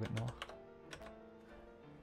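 Computer keyboard typing: a few separate keystrokes, over soft, steady background music.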